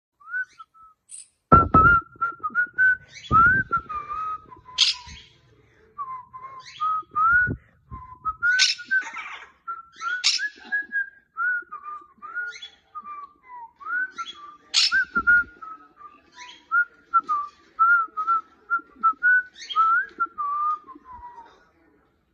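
A whistled tune, bouncing up and down in pitch, kept up almost without a break. It is punctuated every few seconds by short, sharp, high calls from a severe macaw. A few dull bumps come in between.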